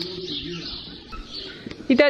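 Birds calling: low, wavering calls with higher chirping above them.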